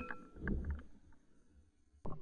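Faint handling noise from the gun-mounted camera: a few soft knocks and rustles with a low rumble in the first second, then near silence.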